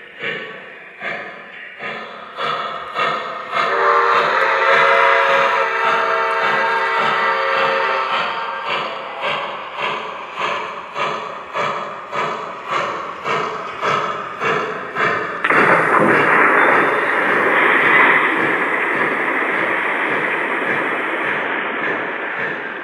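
Lionel VisionLine Niagara 4-8-4 model steam locomotive's onboard sound system running. It gives a steady chuffing of about two beats a second, and a multi-note steam whistle is held for about four seconds a few seconds in. A long hiss like steam being released starts suddenly past the halfway mark and lasts about six seconds over the chuffing.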